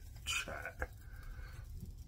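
A metal pizza peel scraping briefly and knocking once, about a second in, as a pizza is slid off the oven rack, over a low steady hum.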